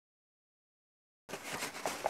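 Dead silence for about the first second and a quarter, then the sound cuts in faintly: light handling noise from a paper flour bag being picked up at a kitchen counter.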